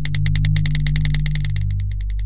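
Intro music sound effect: a steady low drone with a fast, even ticking over it, about fourteen ticks a second, which thins out near the end.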